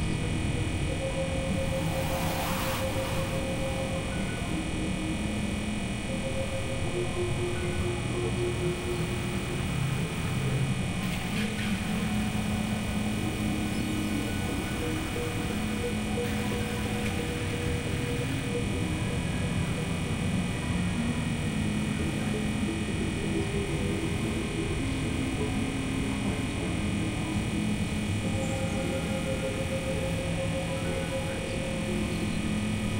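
Experimental synthesizer drone music: a dense bed of steady held tones with slowly changing sustained notes in the low-middle range, and brief noisy swishes about two seconds in and again around eleven seconds.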